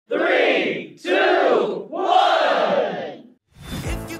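A group of voices shouting together three times, like a battle cry, with the last shout the longest. A music track with a steady beat starts near the end.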